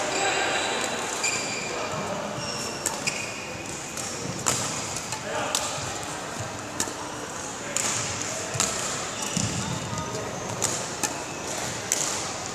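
Badminton racket striking shuttlecocks in a practice drill, sharp hits roughly once a second, mixed with sneaker squeaks and footfalls on the court floor.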